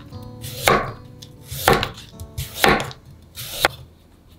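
Kitchen knife slicing a carrot into rounds on a wooden cutting board: four chops, about one a second, each knife stroke going through the carrot and striking the board.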